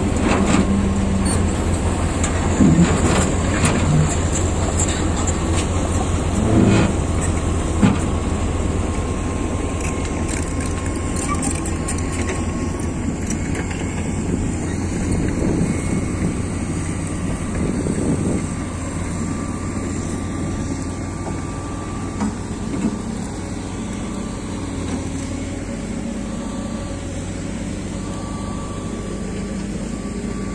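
Crawler excavator's diesel engine running steadily as the machine is unloaded from a lowboy trailer, with several sharp metal clanks in the first eight seconds or so.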